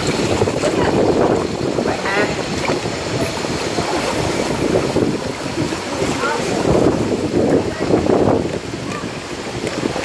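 Swimming-pool water splashing and churning close by, a steady rushing noise that swells and fades, with faint voices in the background.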